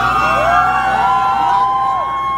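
Live rock band's electric guitars playing long gliding notes that bend upward in pitch and then hold, sounding siren-like, over a low steady hum from the stage.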